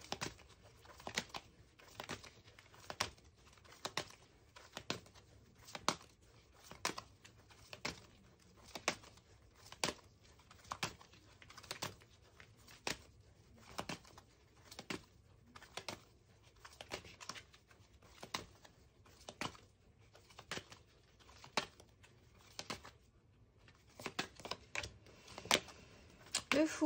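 A tarot deck shuffled by hand: the cards flick and slap against each other in soft, short strokes about once a second.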